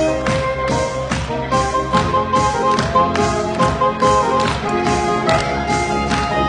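Saxophone ensemble playing a pop tune, sustained reed melody over a steady drum beat of about two strokes a second.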